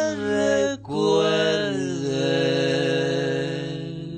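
Old recorded song: voices holding long sustained notes in harmony, with a short break just under a second in, then one long held note that slowly fades.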